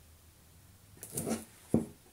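Acrylic paint squeezed from a plastic squeeze bottle into a plastic cup: a short sputtering squirt about a second in, then one sharp click.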